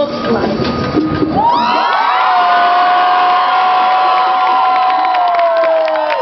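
Crowd cheering at the end of a poem: a mix of voices at first, then from about a second and a half in many people raise long, held shouts together.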